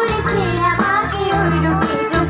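Live band music with female singing: women's voices singing a Bengali song over electric guitar and keyboard, amplified through stage loudspeakers.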